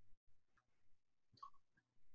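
Near silence: faint room tone with a few faint clicks, the clearest about one and a half seconds in.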